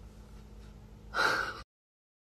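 A person's short, loud gasp about a second in, lasting about half a second, over faint room tone with a low hum. The sound cuts off abruptly into silence.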